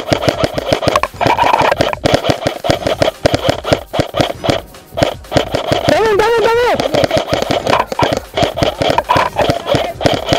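Airsoft rifles firing in rapid, irregular clicking bursts during a skirmish, with a shout about six seconds in and music underneath.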